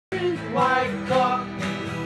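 Acoustic guitar music with a voice singing over it.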